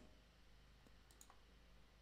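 Near silence with room tone and a few faint, short computer-mouse clicks around the middle.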